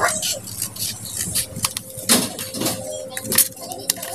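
Small scissors snipping along the edge of a plastic laminating film: a run of short, crisp cuts with the film rustling as it is handled. A voice is heard briefly around the middle.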